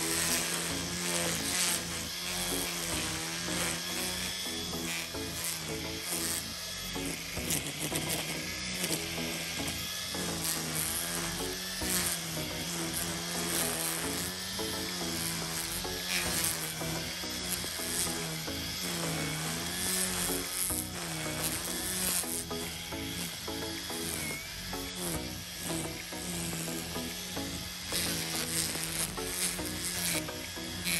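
EGO cordless electric string trimmer with an Echo Speed-Feed 400 head running steadily, its line buzzing as it cuts grass along the base of a wooden fence, its pitch wavering as the load changes. Background music plays under it.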